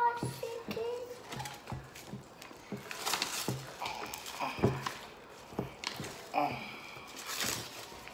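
Wet glue-and-Tide slime being squeezed and kneaded by hand in a glass bowl: irregular squelches and sticky popping clicks, with a few short child vocal sounds in between.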